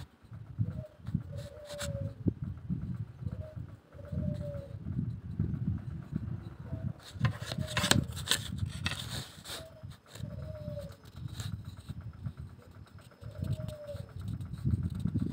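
A dove cooing: a short note and then a longer arched note, repeated every few seconds, over irregular low rumbling noise. A cluster of clicks and taps comes about seven to nine seconds in.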